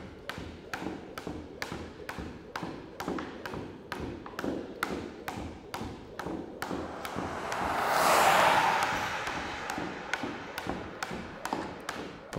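Even, rhythmic tapping at about three taps a second, stopping just before the end. A car drives past, swelling to its loudest about eight seconds in and then fading away.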